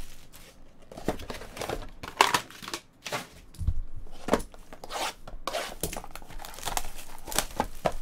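Clear plastic wrapper being torn and crinkled off a cardboard trading-card mini-box, with the boxes handled and set down on a rubber mat. Irregular crackling and tearing strokes, a few sharper than the rest.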